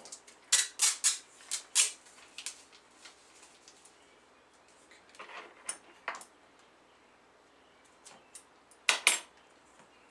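Packages being handled and wrapped by hand: sharp clicks, clacks and rustles in a few clusters, loudest in the first two seconds and again about nine seconds in, with quiet stretches between.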